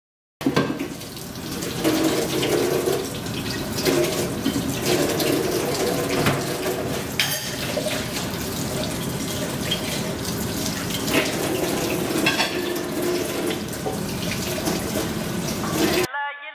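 Kitchen tap running into a stainless-steel sink while dishes are washed by hand, with a few sharp clinks of crockery. It starts suddenly about half a second in.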